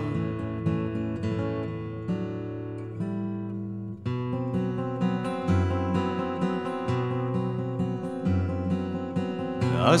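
Instrumental passage of a song: acoustic guitar playing over low sustained notes, with a brief dip and a change of chord about four seconds in. A singing voice comes back right at the end.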